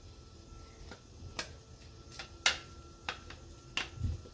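A metal spoon clicking and knocking against the inside of a plastic blender cup while stirring thick carrot-cake batter: about seven irregular sharp clicks, the loudest about halfway through.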